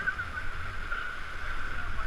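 Steady rush of whitewater rapids on a high, fast river, heard through a GoPro camera, with a low rumble of wind on the microphone.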